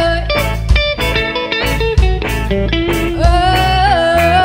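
Live band playing a song: a woman singing over electric guitar and a drum kit, with drum hits about twice a second.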